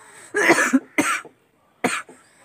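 A man coughing three times in short bursts, the first the longest.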